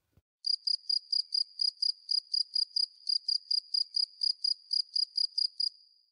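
Cricket chirping, used as an edited-in gag sound effect: an even run of high chirps, about four or five a second, starting about half a second in and stopping just before the end.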